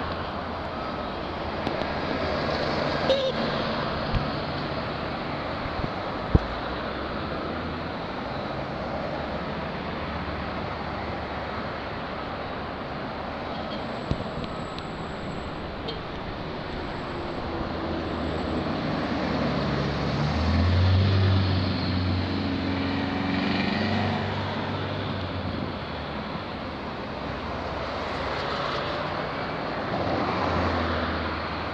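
Caterpillar tracked hydraulic excavator's diesel engine running steadily as it moves a tree, getting louder for a few seconds about two-thirds of the way through. A few sharp knocks sound in the first seven seconds.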